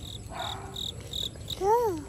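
An insect chirping outdoors: a short, high, one-pitch chirp repeated evenly about three times a second. Near the end a baby gives a short vocal sound that rises and then falls in pitch.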